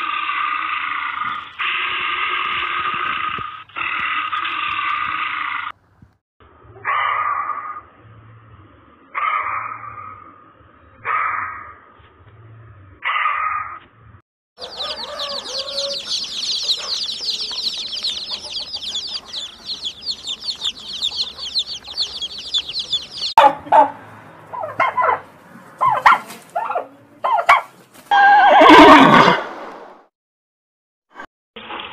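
A dense flock of chicks peeping for about nine seconds in the middle, after a run of other repeated animal calls. Near the end a horse neighs loudly with a falling pitch.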